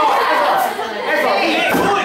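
Several people talking and calling out over each other, a lively chatter of voices in a large room.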